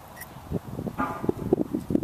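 Irregular footsteps and scuffing on loose dirt and wood chips, starting about half a second in, with a short whine about a second in.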